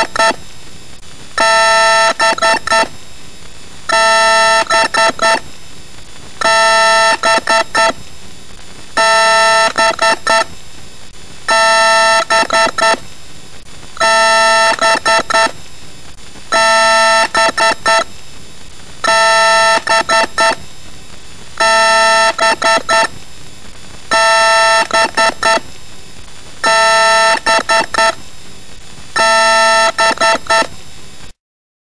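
Electronic beeping in a fixed, repeating figure: a held tone followed by a quick run of about five short beeps, recurring about every two and a half seconds.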